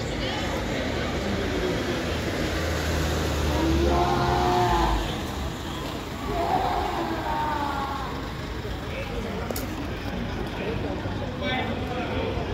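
Street traffic noise, with a vehicle engine running low and steady for the first five seconds or so. Voices come through briefly twice in the middle.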